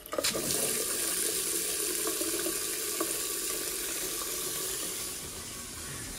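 Mixer tap running steadily into a small ceramic basin and draining down its waste, a first flow test of the newly connected sink waste. The flow eases a little near the end.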